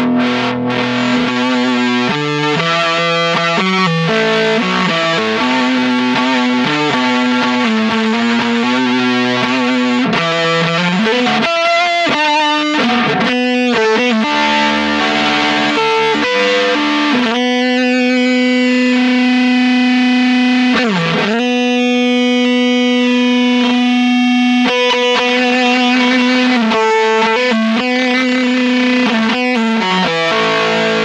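Electric guitar played through a Chase Bliss Audio × ZVEX Bliss Factory two-germanium-transistor fuzz, with thick distorted sustained notes. In the second half a single note is held for about twelve seconds and sustains into controlled feedback, with a brief swoop down in pitch partway through.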